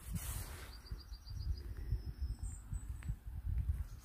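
Wind buffeting the microphone in a low, uneven rumble. About a second in, a small bird calls a quick run of about eight short, high notes.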